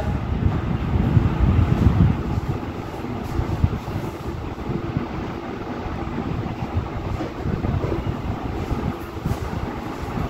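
Low, uneven rumbling noise with no speech.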